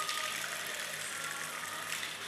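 Water gushing and splashing over a stone Shiva lingam and running off across its basin, a steady hiss.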